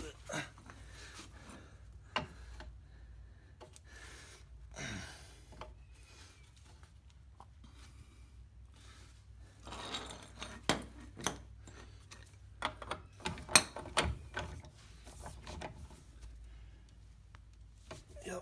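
Steel tools clinking and knocking as a torque multiplier, its socket and a breaker bar are repositioned and fitted onto a VW axle nut. The knocks are scattered and come thickest in a cluster a little past halfway.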